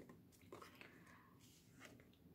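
Near silence, with a few faint soft handling sounds as tarot cards are laid down on a cloth-covered table.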